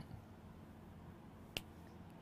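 Near silence with a single short, sharp click about one and a half seconds in.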